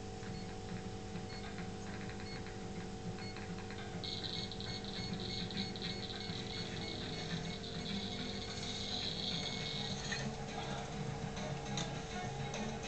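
Film soundtrack playing through a TV's speakers: a quiet passage over a steady hum, with a high, even tone from about four seconds in to about ten seconds.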